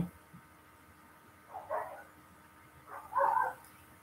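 A dog barking twice, two short barks about a second and a half apart.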